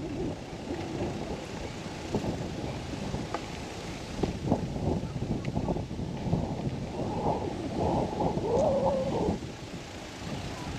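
Wind buffeting the microphone of a camera carried on a moving bicycle, a low rumble with crackles, along with tyre noise on the paved path. It swells louder for a couple of seconds near the end.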